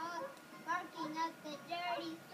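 A child singing a few notes of a tune, holding and sliding between pitches.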